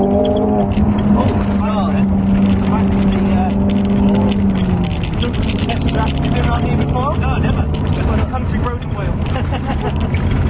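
Ford Focus RS's 2.3-litre EcoBoost turbocharged four-cylinder engine, heard from inside the cabin, pulling hard at a steady high note for the first few seconds. About five seconds in the note drops, and it then holds a lower steady pitch under a heavy rumble.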